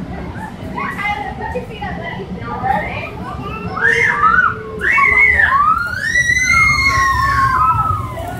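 Young children's voices chattering and calling out, growing louder about halfway through, with long, high-pitched drawn-out squeals near the end.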